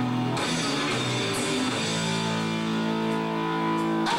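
Live rock band playing an instrumental passage led by electric guitar, with no singing. The guitar holds sustained notes that shift a couple of times early on, then ring steadily.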